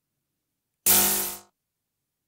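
Electronic 'DXP Space Cymbal' drum-machine sample played once, soloed, about a second in. It starts sharply, a pitched metallic ring mixed with hiss, and fades out within about half a second.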